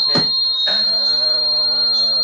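Audio feedback from a computer's sound looping into room microphones: a steady high-pitched whine, joined about half a second in by a lower buzzing drone that holds for about two seconds.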